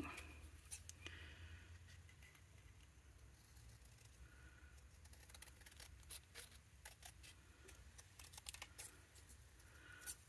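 Faint snips of small craft scissors cutting a narrow strip of cardstock: several quiet clicks, most of them in the second half, over a low steady hum.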